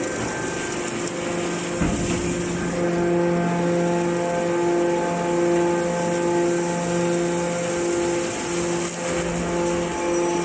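Hydraulic metal baler running, its pump and motor giving a steady hum with a regular pulsing in it, a little under two beats a second, as the ram pushes a load of steel turnings through the chamber.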